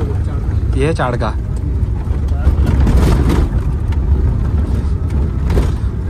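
Maruti 800's small three-cylinder petrol engine running, heard from inside the cabin as a steady low rumble with road noise while driving a rough lane, getting louder and rougher around the middle. A short voice cuts in about a second in.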